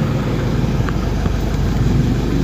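Car engine idling, a steady low rumble heard from inside the cabin, with one faint tick about a second in.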